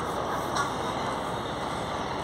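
Steady outdoor background noise: an even, continuous hum of the surroundings with no distinct events.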